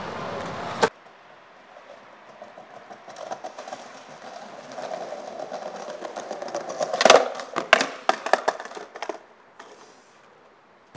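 Skateboard wheels rolling on smooth concrete, growing louder as the skater picks up speed. About seven seconds in come sharp clacks of the board on the ground, followed by several more knocks over the next second and a half before the rolling fades out.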